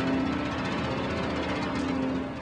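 Jazz-fusion trio playing live: a rapid, even drum roll over a held low note.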